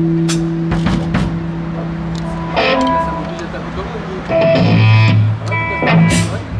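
Electric guitars and bass played loosely between songs: a held note rings for the first couple of seconds among scattered sharp taps, then short chords come in about midway and again near the end over a deep bass note.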